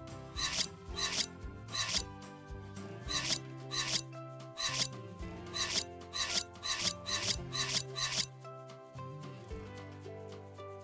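A small kitchen knife cutting and dicing an avocado against a glass cutting board: a series of short, rasping scrape strokes at about two a second, stopping shortly before the end. Background music plays underneath.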